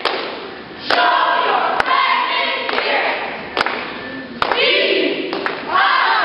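Cheerleading squad yelling a cheer in unison, broken by several sharp hits, with whooping voices rising near the end.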